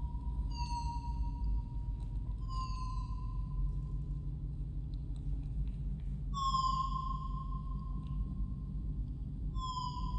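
Electronic part of a piece for piano and electronics: a steady high tone held throughout, with short falling sweeps high above it four times, over a low rumble. The loudest sweep comes about six seconds in.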